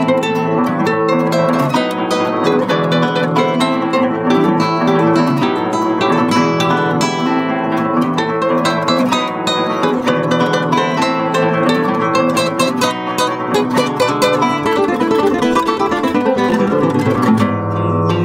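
Two nylon-string classical guitars playing a lively duo, with quick plucked notes over a bass line. Near the end a falling run of notes leads down to a strong low bass note.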